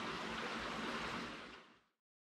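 Steady outdoor background rush, like running water, fading away to silence near the end.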